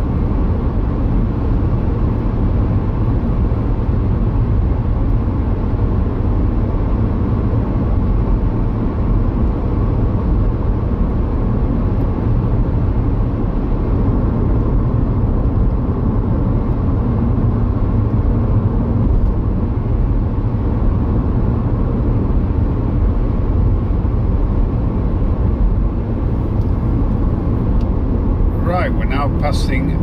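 Steady road and engine noise inside a moving car's cabin, deep and even throughout. A voice begins near the end.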